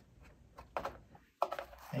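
A few faint clicks and knocks of plastic vacuum parts being handled as the brush roll ends are pushed down into their slots in the vacuum base, over a quiet room.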